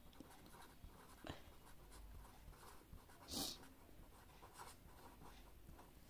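Faint scratching of a felt-tip marker writing on paper, in short soft strokes, with one brief louder hiss about halfway through.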